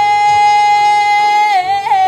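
A man singing one long, steady high note with a strong voice, then breaking into a short wavering run of notes near the end.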